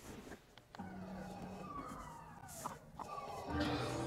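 Film soundtrack from a home theater's surround-sound system: faint sound effects with falling, sweeping tones, then the soundtrack swells louder with steady low tones about three and a half seconds in.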